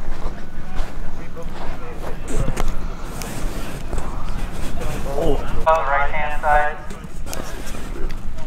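Steady low wind rumble on the microphone, with people's voices talking briefly about six seconds in.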